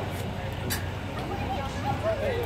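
Faint background chatter of a crowd over a low, steady hum, with a single sharp click a little under a second in and a few faint voices near the end.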